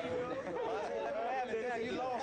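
Several men's voices talking over one another, an indistinct chatter of onlookers.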